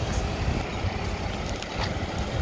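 Wind buffeting the microphone: an uneven low rumble with a light hiss.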